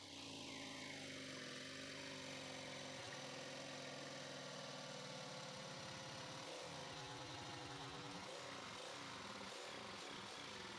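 Jigsaw running steadily as its blade cuts through a white board, the motor's pitch wavering a little in the second half under the load of the cut.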